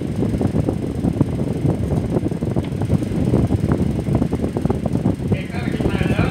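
A steady low rumbling noise with a rough, crackly texture fills the recording, with no break or change. A man's voice starts near the end.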